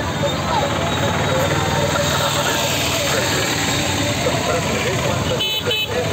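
Roadside din of a slow convoy of auto-rickshaws and jeeps, with the running of their engines under the talk and calls of many people. A few quick horn beeps sound near the end.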